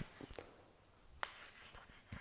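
Faint scratching of chalk writing on a small handheld slate, with a light tap about a second in.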